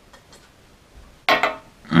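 Faint gulping of milk from a glass, then about a second and a half in a sudden loud pained gasp from a mouth burning with naga morich chili powder. A moaning 'oi' starts at the very end.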